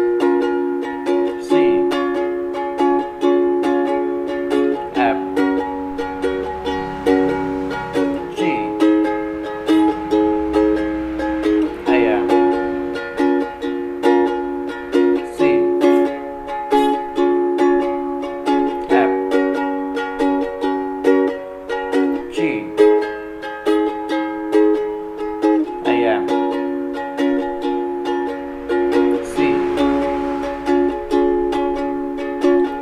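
Ukulele strummed in a steady rhythm through the chord loop Am, C, F, G, changing chord about every three and a half seconds.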